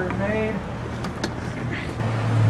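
Steady low hum of street traffic, with a brief high-pitched voice in the first half second and a couple of sharp clicks about a second in.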